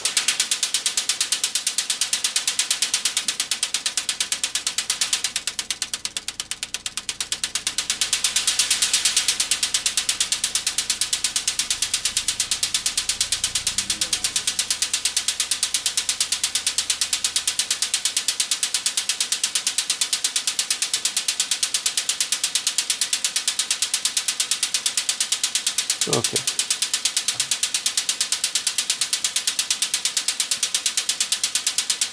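Synthesized electronic hi-hats from a modular synthesizer playing a fast, steady sequenced loop of sharp, hissy ticks. Its tone shifts as knobs are turned: quieter and duller a few seconds in, then brighter and louder about nine seconds in.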